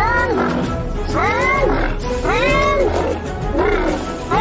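Loona robot pet's synthesized animal-like calls: four short voiced cries, each rising and then falling in pitch, over background music.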